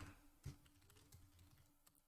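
Near silence with a few faint computer keyboard keystrokes, one slightly clearer about half a second in, as a terminal command is typed and entered.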